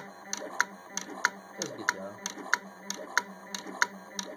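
Allen-Bradley terminal-marker pen plotter writing letters on marker strips: its pen head clicks regularly, about three times a second, over a low steady hum.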